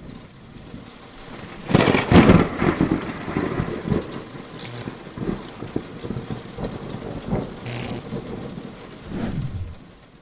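Thunderstorm-style sound effect under an animated title sequence: a rumble builds to a loud thunder-like crash about two seconds in, then rumbling and crackling like rain, with two short hisses, dying away just before the end.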